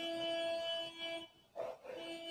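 A woman's voice holding a steady hummed note for just over a second, then humming the same note again briefly near the end.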